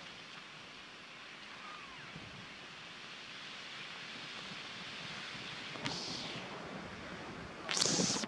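Steady outdoor background hiss, like wind on the microphone, with a brief high-pitched sound about six seconds in and a louder sharp sound starting near the end.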